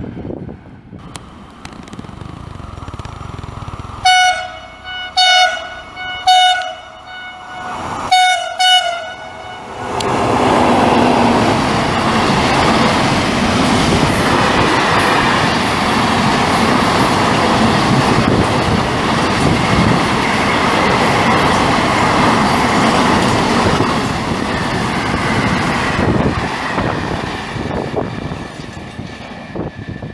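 A freight train's horn sounds five short blasts, a driver's greeting, and then the freight train passes at speed with a loud, steady rumble and clatter of wheels on rail that fades away near the end.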